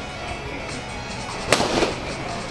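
An Easton Ghost X Evolution composite bat hitting a rubber baseball off a tee: one sharp crack of contact about one and a half seconds in, followed by a lighter knock. Background music plays underneath.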